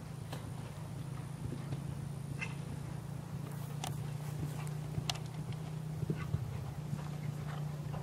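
Hoofbeats of a show-jumping horse cantering on sand arena footing between fences, heard as scattered soft knocks and clicks over a steady low hum.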